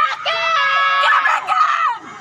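Several people shouting and screaming in high-pitched voices, cheering in long drawn-out yells that overlap, breaking off near the end.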